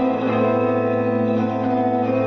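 Live rock band music: electric guitars playing slow, sustained droning chords, the notes held steady.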